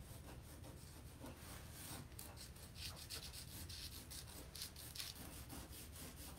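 Felt-tip pen scratching on watercolour paper in many short, quick strokes, faint, as curly fur is drawn in.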